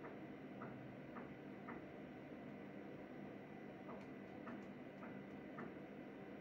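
Faint small clicks in short runs of three or four, about two a second, with a pause of a couple of seconds in the middle, over a low steady hum.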